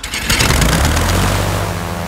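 Cartoon sound effect of a radio-controlled toy propeller aeroplane's engine revving up as it takes off: a loud rush that settles into a steady engine buzz.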